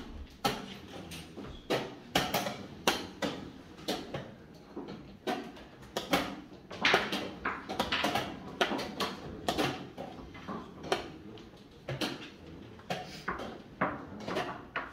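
Wooden chess pieces clacking down on a wooden board and a chess clock's buttons being pressed in a blitz game: a quick, irregular run of knocks and clicks.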